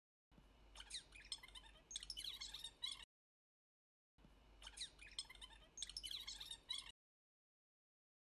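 A short sound effect of bird-like chirps and quick falling whistles, played twice, each burst about three seconds long, with dead silence between them.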